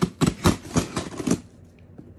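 Scissors cutting through the packing tape on a cardboard box: about six sharp snips or scrapes in quick succession, roughly four a second, then quieter rustling as the flaps are worked open.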